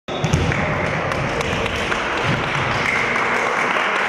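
Echoing gymnasium ambience during a volleyball match: a steady wash of hall noise and indistinct voices, with scattered light knocks of the ball and feet on the wooden court.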